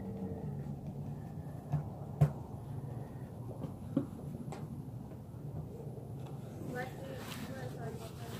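Quiet handling of fabric: a pen being drawn along black cloth on a slatted table, with a few light taps and rustles over a steady low background hum.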